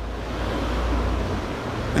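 Steady rushing noise of moving air on the microphone, with a low rumble that drops away a little past halfway.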